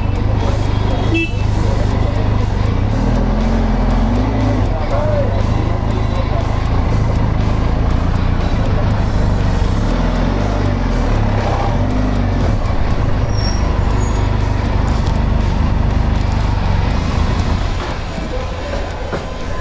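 Benelli TRK 502X's parallel-twin engine running as the motorcycle rolls along slowly. A short horn beep sounds about a second in.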